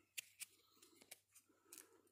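Near silence with a few faint, brief clicks of hard plastic parts being handled: a full-face snorkel mask and a drilled plastic deodorant cap.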